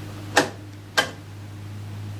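Two sharp clicks about half a second apart, from a knob or rotary switch being turned on the front panel of a Johnson Viking Ranger II tube transmitter. A steady low hum runs underneath.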